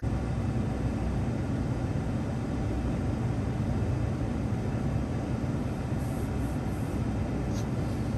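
Steady low rumble and hiss of a car's interior with the engine idling while the car stands still.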